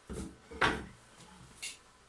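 Handling knocks: a few short thuds and scrapes as a stainless square-tube frame is shifted on wooden boards, the loudest about half a second in, then a short click near the end.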